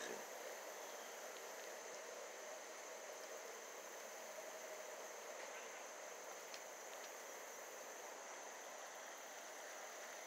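Faint, steady outdoor ambience dominated by a constant high-pitched insect drone, unchanging throughout, over a soft even hiss.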